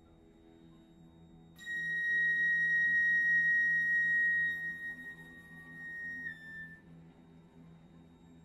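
A single high, pure-sounding instrumental note enters sharply, holds steady and loud for about three seconds, then fades, dropping slightly in pitch as it dies away, over a faint low sustained drone in the ensemble.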